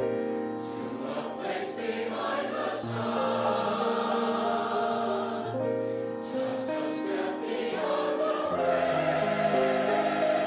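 Choir singing held chords that move from one to the next every second or so, with the singers' 's' sounds hissing now and then.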